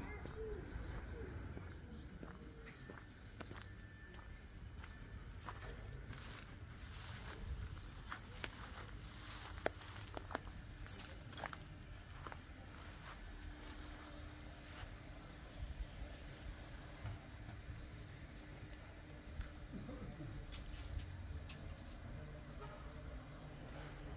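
Faint outdoor street ambience: a low rumble with scattered clicks and taps, and a faint steady hum from about nine seconds in until near the end.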